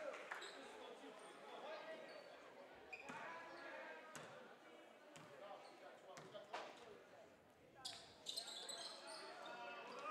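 Faint gymnasium ambience of crowd voices, with a basketball bouncing a few times on the hardwood floor during a free-throw routine. Sneakers squeak near the end as play resumes.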